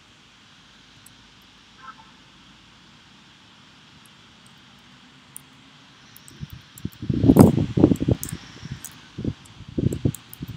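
Typing on a computer keyboard: a few faint key clicks over a low steady hiss, then from about seven seconds in a quick, irregular run of loud, dull keystroke thumps.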